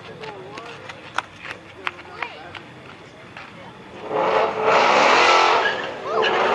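A 2020 Ford Mustang GT's 5.0-litre V8 at full throttle launching off a drag-strip start line. It turns loud about four seconds in and holds for nearly two seconds. Before that there are only faint voices and clicks.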